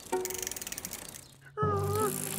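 Cartoon bicycle sound effect: a rapid run of ticks, about a dozen a second, as the bike is ridden off, over background music. A held pitched sound starts about one and a half seconds in.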